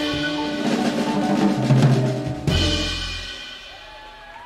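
Live jazz band with saxophones, piano, double bass and drum kit ending a tune. A drum fill under held horn notes builds to a final accented hit about two and a half seconds in, which rings and fades away.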